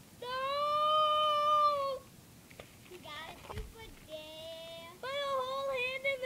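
A child's voice: a long, held, high-pitched cry lasting nearly two seconds, a shorter held note a couple of seconds later, then a run of broken, wavering cries near the end.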